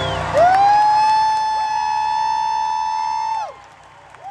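A loud two-finger whistle from a concert audience member, rising quickly and then held on one pitch for about three seconds; a second, slightly higher whistle joins partway through, and both stop together near the end, over faint crowd cheering as the song finishes.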